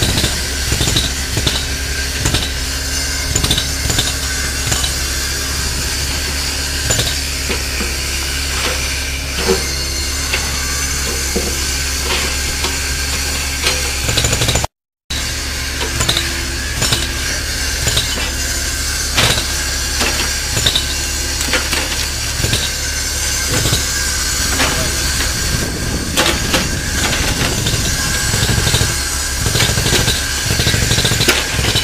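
Mini excavator's diesel engine running steadily, with scattered metallic clinks and knocks from the lifting chains and bucket on a cracked concrete pile head. The sound drops out briefly about halfway through.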